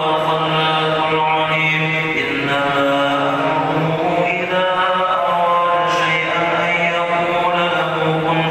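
Men's voices chanting an Islamic devotional chant in long, held notes that shift in pitch every couple of seconds, without pause.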